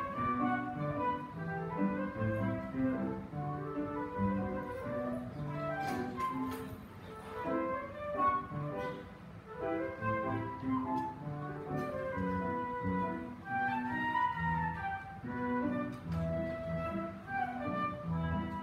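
Grand piano accompanying a solo melody instrument in a steady instrumental piece, with held notes moving stepwise above the piano's chords.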